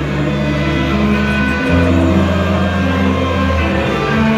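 Live band music in a concert hall, with held low chords that change a little under two seconds in.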